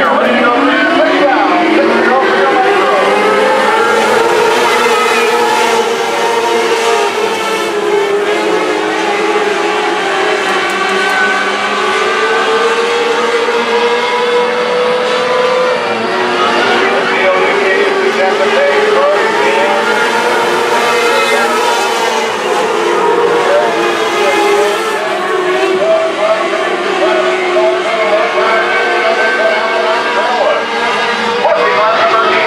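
A pack of modlite dirt-track race cars racing on the oval, several engines at once. Their pitch climbs over the first few seconds as the field accelerates, then rises and falls as the cars work through the turns.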